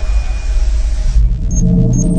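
A deep rumbling intro sound effect thinning out, giving way about a second in to music with held low tones under the logo reveal.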